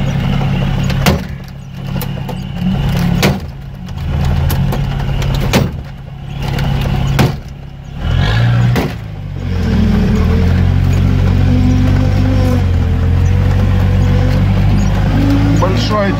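UAZ off-roader's engine heard from inside the cab while driving slowly through deep mud, with sharp knocks from the body and suspension about four times as the engine note drops and picks up again. From about ten seconds in the engine runs steadily and more loudly.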